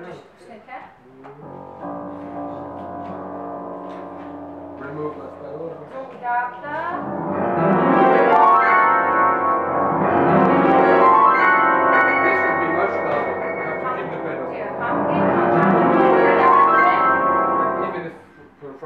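Acoustic piano playing a passage that starts softly about a second and a half in, swells into full, loud chords from about seven seconds, eases off briefly, swells again and stops near the end.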